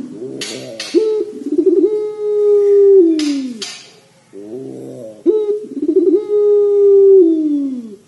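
Puter pelung (ringneck dove) giving two long coos. Each opens with a bubbling, rolling trill and runs into a long held note that falls away in pitch at its end. Short hissing noises come at the start of the first coo and just after its end.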